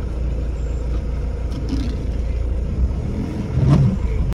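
Car engine and road rumble heard from inside the cabin while driving slowly, a steady low drone.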